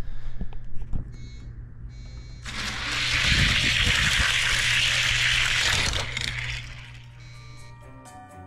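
Die-cast toy cars running down a four-lane orange plastic track after the starting gate drops: a dense rushing rattle of small wheels on plastic that builds about two and a half seconds in, holds for about four seconds and fades near the end. A few clicks come before it, over a steady low hum.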